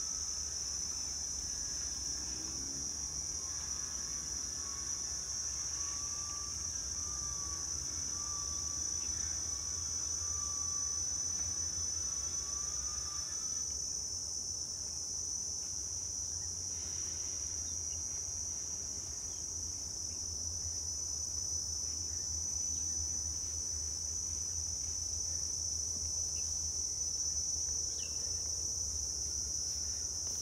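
Steady, high-pitched chorus of insects, one continuous unbroken drone, over a low rumble.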